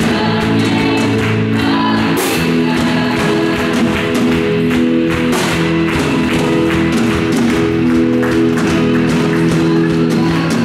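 Live worship band playing a song: electric bass, electric guitar, a Casio Privia digital piano and a drum kit with cymbal strikes, steady and loud throughout.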